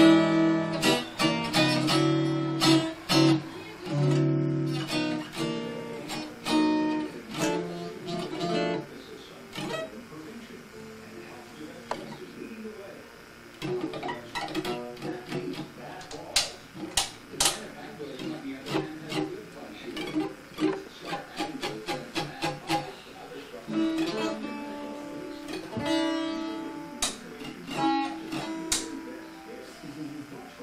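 Hollow-body archtop guitar strummed in full chords. After about ten seconds the chords give way to scattered plucked notes and sharp string clicks as a toddler paws at the strings, and full chords return near the end.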